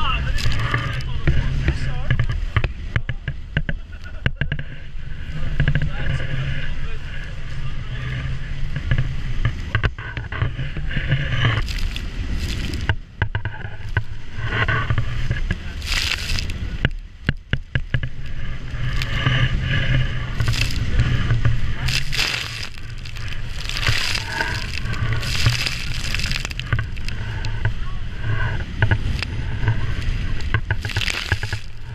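A Robalo motorboat running hard through rough chop. Wind buffets the bow-mounted camera's microphone in a steady low rumble, and repeated rushes of spray and waves break over the bow, most often in the second half.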